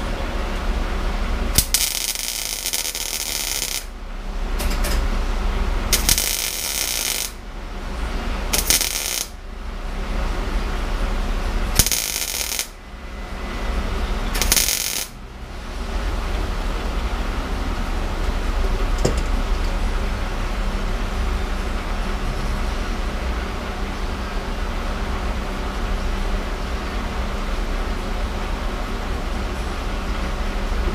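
Welding arc crackling in five bursts over the first fifteen seconds, each a few seconds long or less, as weld is built up into a blob on a broken exhaust stud in an LSX cylinder head so the stud can be gripped and backed out. After that there is a steady mechanical hum.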